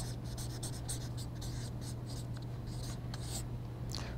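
Marker writing on a paper flip-chart pad: a quick run of short strokes that stops about three and a half seconds in, over a steady low hum.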